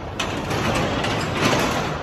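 Sectional garage door rolling up along its tracks: a steady noisy run with scattered clicks from the rollers.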